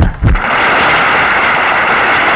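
Fight-scene sound effects: a sharp hit and a short low thud as a fighter is knocked down onto the mat, then a steady, loud rushing noise.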